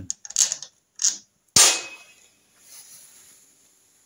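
A few light metallic clicks as small parts and tools are handled at the engine's timing case, then one sharper, louder clink with a short ring about a second and a half in, like metal set down on the steel bench.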